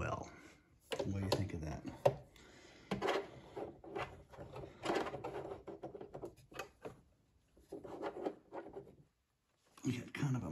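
Singer sewing machine stitching through layers of fleece in short runs, stopping and starting several times with pauses between.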